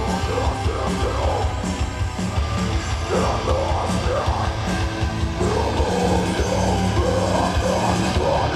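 A heavy metal band playing live at full volume: distorted electric guitars over bass and drums, a dense, unbroken wall of sound.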